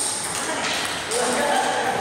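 A table tennis ball gives one sharp click as the rally ends, followed by players' voices calling out between points.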